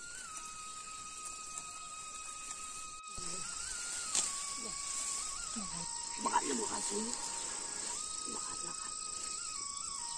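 A steady, high-pitched chorus of insects with faint music over it: long held notes that step between a few pitches. Faint voices can be heard in the middle.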